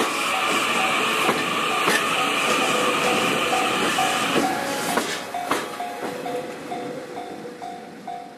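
The TRAIN SUITE Shiki-shima luxury sleeper train passes close by, its wheels clicking over the rail joints. A steady high whine stops about four seconds in as the last car clears. After that a short ringing tone repeats two or three times a second and fades.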